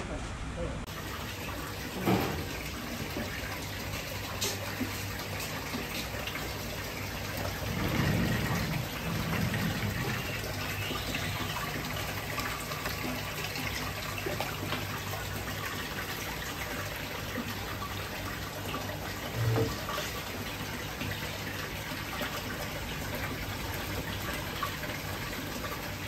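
Water pouring steadily from pipes into a live king crab holding tank, a constant splashing rush, with a sharp knock about two seconds in and a short thump near the end.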